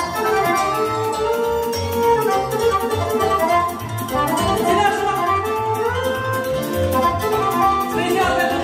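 Live accordion playing a lively melody over a steady, even beat from the backing band.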